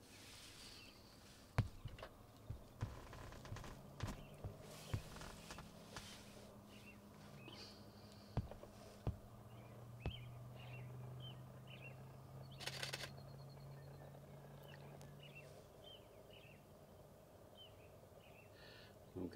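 Faint outdoor bird chirps, a run of short calls repeating through the second half, with scattered sharp clicks and knocks near the microphone and a brief rattle of rapid clicks about two-thirds of the way in. A faint low hum runs underneath for several seconds in the middle.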